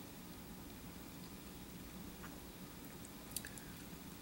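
Faint mouth sounds of someone chewing a bite of crisp apple (a grape-flavoured Grapple), with a small sharp crunch a little after three seconds in.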